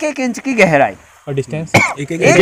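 A man's voice speaking, with a short pause about a second in, then brief throaty sounds before the talk resumes.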